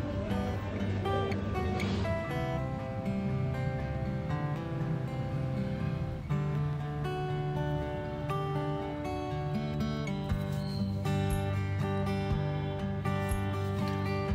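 Background music led by guitar, playing a steady melody of held notes.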